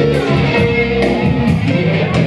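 Electric rock guitar from a JamMate JM400 USB guitar, played live through AmpliTube amp-modelling software, over a rock backing track with drums.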